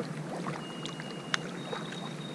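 Quiet ambience from a canoe sitting on calm water, with one sharp click a little past the middle. Two thin, high, steady whistling tones sound one after the other, the second carrying on to the end.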